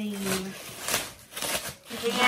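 Plastic bubble wrap crinkling and rustling in several short bursts as it is handled and pulled off a wrapped object, after a drawn-out vocal sound at the start.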